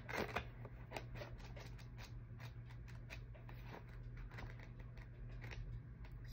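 Pages of a small paperback guidebook flipped through by thumb: a quick, irregular run of soft paper flicks.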